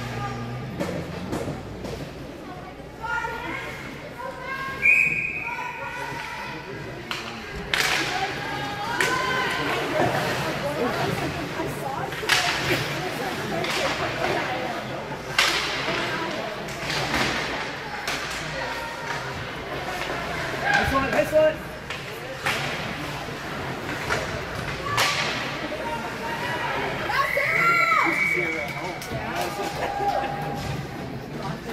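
Ice hockey play in a rink: sharp knocks of the puck and sticks against the boards and ice, repeated irregularly, with voices calling out over the arena noise.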